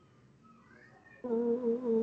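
A person's voice holding a level-pitched "mmm" thinking sound for about a second, starting just past the middle, with a brief dip partway through.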